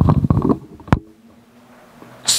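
A man's voice trailing off into a low, creaky throat sound for about half a second, followed a little before the midpoint by a single sharp click.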